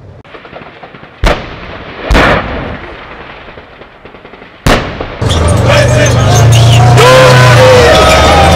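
Three heavy blasts of artillery or tank fire, about a second apart early on and once more past the middle, each with a rolling tail. From about five seconds in, an armoured vehicle runs loudly with a deep steady engine rumble and wavering high tones over it.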